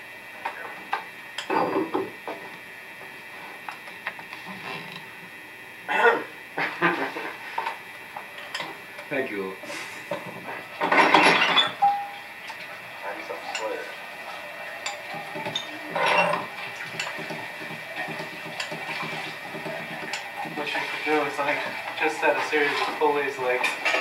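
Metal parts of a home-built astrolabe clock mechanism clinking and knocking as it is adjusted, with scattered sharp knocks and a louder clatter about halfway through. Low voices murmur near the end.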